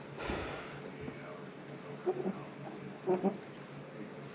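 A person's short, noisy breath near the start, followed by a couple of faint murmurs about two and three seconds in.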